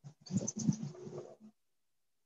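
A horse nickering softly, a low pulsing sound lasting about a second and a half.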